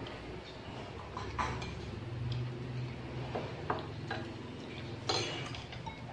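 Spoons and chopsticks clinking against ceramic rice bowls while eating: a few scattered light clinks, the loudest near the end, over a low steady hum.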